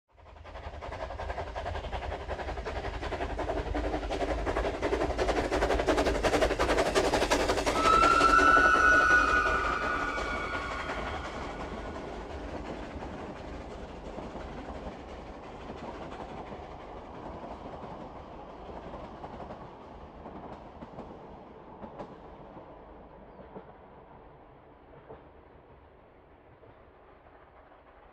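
A full-size train approaching and passing, its rumble and wheel clatter building for several seconds. It whistles about eight seconds in, the pitch falling as it goes by, and then the rumble slowly fades away.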